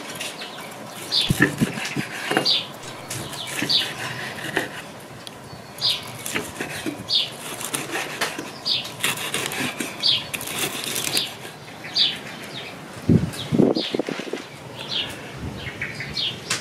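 A large chef's knife slicing through a grilled T-bone steak on a wooden cutting board, with scrapes and cuts of the blade through the crust and onto the board. A few dull knocks come near the end. A bird repeats a short, high, falling chirp about once a second.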